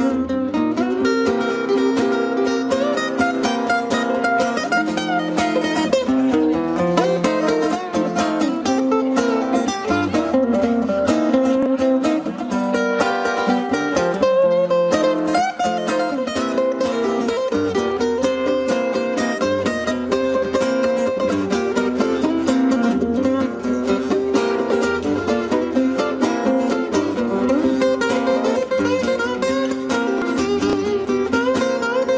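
Live blues played on an amplified guitar through a PA speaker, a steady plucked and strummed groove with no break.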